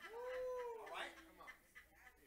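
A faint, single drawn-out vocal call. Its pitch rises quickly, then slides slowly down over about a second.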